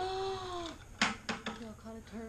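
A young child's drawn-out wordless vocal sound, one arching note under a second long, followed by a few sharp clicks and short voice sounds.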